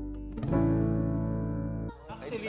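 Background music of strummed acoustic guitar chords left to ring: a new chord is struck about half a second in, and the music cuts off abruptly near the end.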